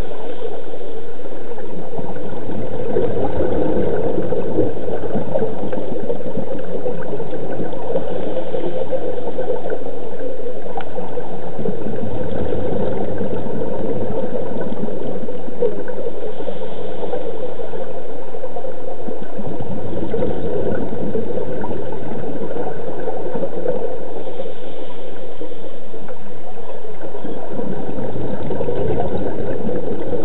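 Scuba diver breathing underwater through a regulator, with exhaled bubbles gurgling in slow surges that recur every several seconds.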